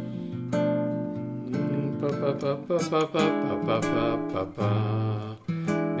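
Nylon-string classical guitar played fingerstyle: ringing chords, then a quicker run of melody notes over a low bass note, with another chord struck near the end.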